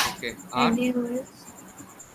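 A person's voice: a sharp hiss right at the start, then one short spoken syllable from about half a second to just over a second in, followed by quiet room tone.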